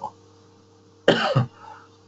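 A man coughs once, a short single cough about a second in.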